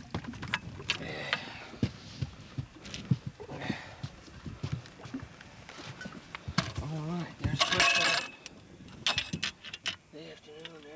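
Knocks and clatter from a landing net holding a blue catfish as it is hauled over the side and set down on the boat's deck, with many short, sharp knocks throughout. About seven seconds in, a person's wordless voice rises and falls briefly.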